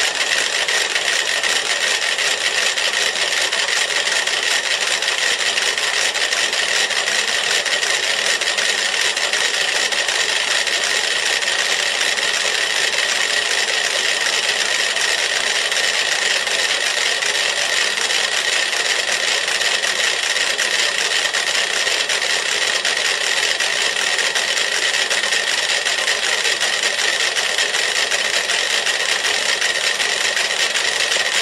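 Dozens of clockwork metronomes ticking at once on a shared platform, out of step with one another, so their clicks merge into a dense, steady rattle with no clear beat.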